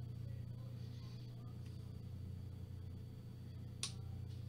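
Quiet room tone with a steady low hum, broken by a single short click near the end.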